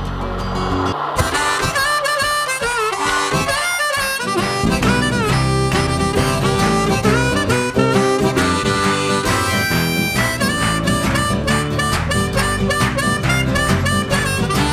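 Music: a harmonica playing a melody with bent notes over band accompaniment. It starts about a second in, as the previous song's held final chord ends, and a steady rhythm comes in a few seconds later.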